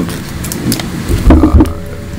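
A brief low rumble or thump picked up by a table microphone, about a second in, with a short murmur of voice over it.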